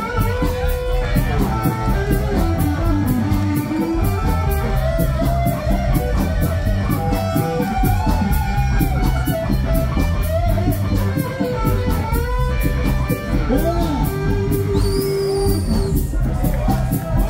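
Live ska band playing an instrumental passage: an electric guitar leads with bending notes over a heavy bass line and drums keeping a steady hi-hat beat.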